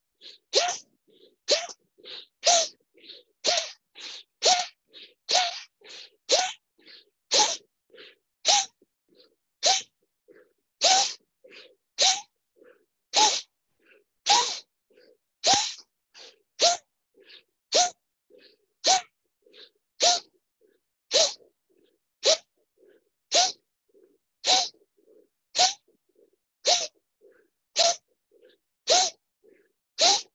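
A person's rhythmic forceful breathing in a yoga breathing exercise: a sharp, loud exhalation about once a second, each short and followed by a soft quieter breath before the next.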